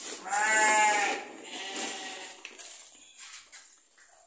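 Sheep bleating: one loud, long bleat lasting about a second near the start, then fainter bleats. These are hungry ewes calling for their feed. A feed sack rustles under the bleating.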